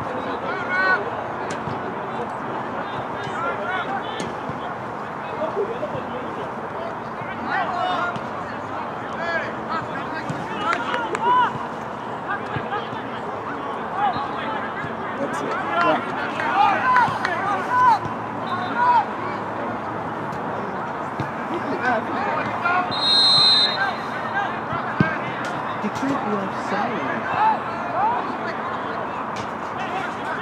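Distant players and spectators shouting and calling over a soccer pitch, short overlapping calls throughout. A referee's whistle blows once, held for about a second, a little over 23 seconds in.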